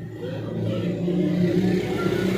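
A steady low droning hum.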